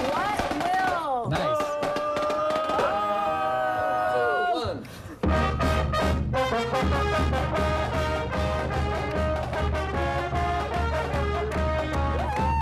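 High school pep band with trumpets, trombones, saxophone and drums. Brass holds long, bending notes for the first few seconds and breaks off briefly about five seconds in. The full band then plays an upbeat fight song over a steady bass drum beat.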